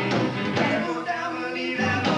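Live band performing a blues song, the music playing steadily throughout.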